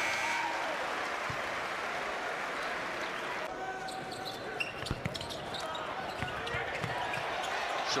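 Steady crowd noise in a basketball arena, with a few single thuds of a basketball bouncing on the hardwood court.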